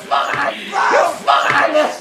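Men's strained, wordless yells and grunts in three short bursts, from a physical struggle over a telephone.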